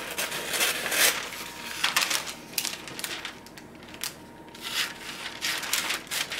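Kitchen shears snipping through a sheet of parchment paper, with crisp crinkling as the paper is lifted and handled. The snips come in runs in the first half and again near the end, with a quieter stretch in between.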